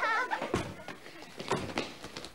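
A wailing voice trails off, then a heavy thump about half a second in and two sharper knocks about a second later.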